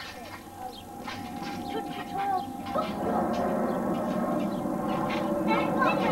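Children's voices and calls in the first half. From about three seconds in, the steady roar of a twin-engine jet airliner flying overhead, with a held engine whine under it, takes over and swells slightly.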